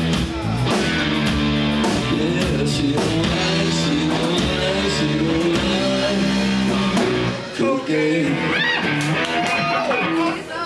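Live rock band playing: electric guitars and bass guitar over drums. The bass drops away about three-quarters of the way through, leaving the guitars.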